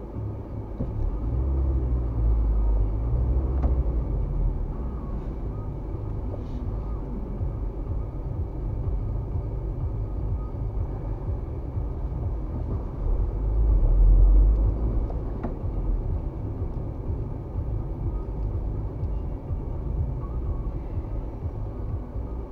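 Road and engine noise inside a moving car's cabin: a steady low rumble that swells louder twice, about two seconds in and again around fourteen seconds in.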